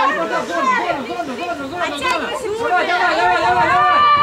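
Several high-pitched women's voices shouting and calling out over one another, loudest around three seconds in.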